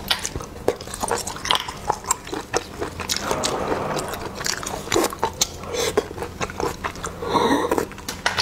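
Close-miked eating of spicy river snails: wet mouth clicks and chewing throughout, with a longer noisy stretch about three seconds in and another near the end.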